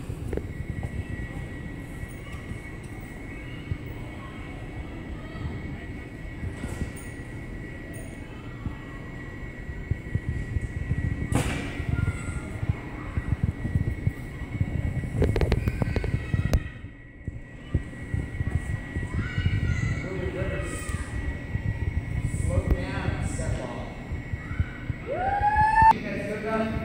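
Reverberant gymnasium hubbub: children's voices and chatter in the background over a low rumble, with a steady high tone and a single sharp knock about eleven seconds in.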